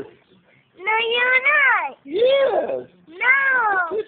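A high-pitched voice giving three long, drawn-out meow-like calls, each rising and then falling in pitch, with short pauses between them.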